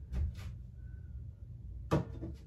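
Decor pieces being handled and set down on a shelf of a white shelving unit: two soft knocks just after the start and a sharp clack near the end as a pitcher is placed on the shelf, over a low steady hum.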